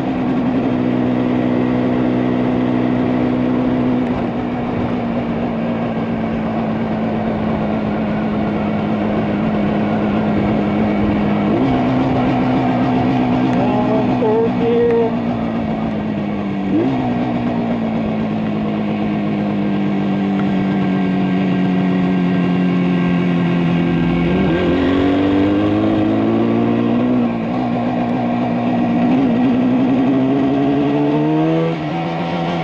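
A 1973 Yamaha RD350's air-cooled two-stroke parallel twin heard on board while riding. The engine note sags slowly as the bike slows and jumps up in pitch twice, as on downshifts. Near the end it climbs steadily as the bike accelerates.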